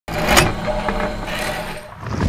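A news-channel intro sound effect: a sudden rush of noise about half a second in, followed by a rumble that fades near the end.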